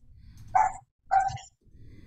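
A dog barking twice, two short, fairly faint barks about half a second apart.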